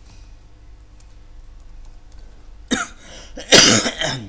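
A person coughing twice: a short cough a little under three seconds in, then a louder, longer cough near the end.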